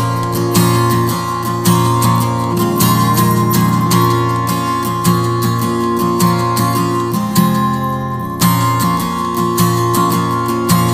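Instrumental passage of an acoustic song: an acoustic guitar strummed in a steady rhythm, about two strums a second, with its chords ringing on between strokes.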